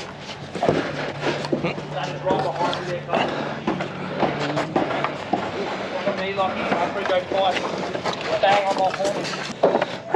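Workers' voices talking indistinctly, mixed with short knocks of timber wall frames being handled. A steady low hum runs through the first half and stops about halfway through.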